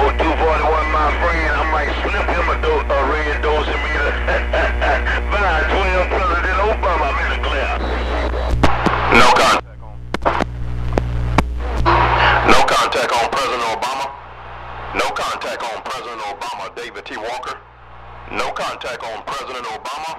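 CB radio voice traffic from the base station's receiver: garbled, unintelligible transmissions over a loud steady hum that cuts off about twelve seconds in, followed by shorter, choppy transmissions.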